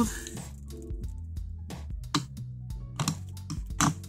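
Scattered clicks and clunks of a flight case's metal twist-lock latches being turned open by hand, over steady background music.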